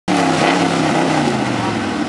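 Lifted mud truck's engine running steadily.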